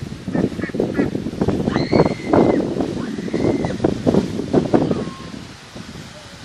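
Domestic ducks in a pen quacking repeatedly, with two longer high-pitched calls in the middle.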